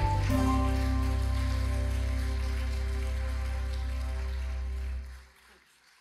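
Outro music: a chord struck at the start and held over a deep bass note, fading out about five seconds in.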